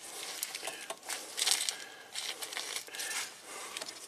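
Crinkly rustling with many small, irregular clicks as hands move a wiring harness with multimeter test leads pierced into it.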